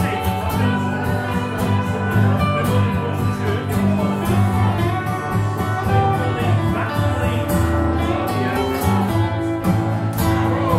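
Dobro (resonator guitar) played with a slide bar in an instrumental break, its notes gliding between pitches, over acoustic guitar accompaniment.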